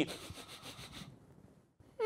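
Faint rustling of clothing against a clip-on lapel microphone as the wearer shifts in his seat, fading out about a second in.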